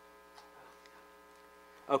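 A low, steady electrical hum during a pause in the talk, with a faint voice in the background about half a second in. A man starts speaking right at the end.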